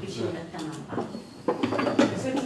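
Indistinct voices of people talking in a room, with a louder burst of speech near the end.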